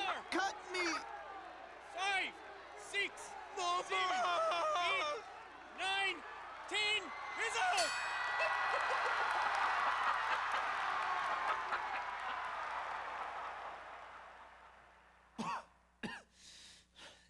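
Short shouted calls from a man's voice, then a crowd cheering and applauding that swells about eight seconds in and dies away over the next several seconds.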